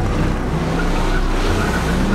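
A car speeding at high revs, its engine note under a loud rush of road and tyre noise that starts suddenly, as a film-trailer sound effect.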